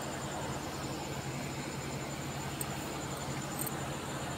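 Steady background hiss with a low, even hum and a faint high whine: the recording's noise floor, with no distinct sound.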